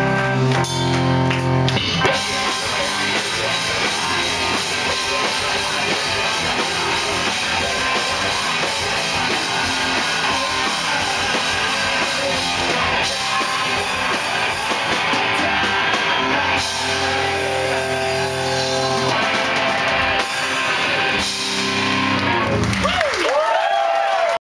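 Live punk rock band playing, loud and steady: electric guitar, bass guitar and drum kit with sung vocals. Near the end the low end drops away as the song winds down.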